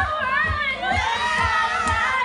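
A woman singing loudly into a handheld microphone over a karaoke backing track with a steady beat, while a group of people cheers and shouts along.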